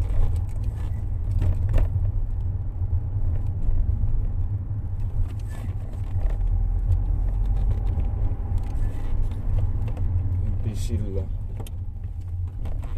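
Steady low rumble of a car's engine and road noise heard from inside the cabin while driving, with a few light knocks.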